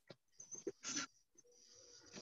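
Faint breathing of a horse whose nostrils are close to the microphone: a few short, soft puffs of breath in the first second.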